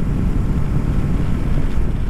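Steady wind rush over the microphone with road noise underneath while riding a 2023 Kawasaki Versys 650 motorcycle at road speed.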